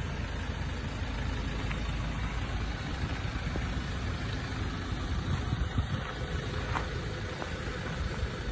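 Ford Ranger 2.2 TDCi four-cylinder diesel engine idling steadily, with a few brief clicks in the second half.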